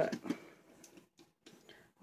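Mostly quiet, with a few faint, scattered ticks and taps from a pencil and wooden popsicle sticks being handled on a table.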